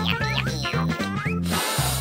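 Bouncy children's background music, with a brief rasping, rattling noise near the end as a plastic screw lid is twisted on a jar of gummy candies.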